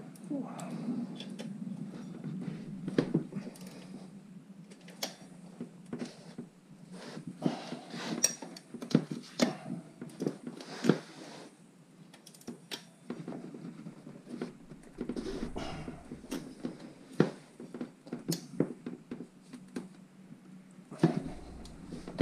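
Irregular small metallic clicks and clinks of an L-shaped hand key working the bolts of a motorcycle's rear brake disc loose, with a low steady hum underneath.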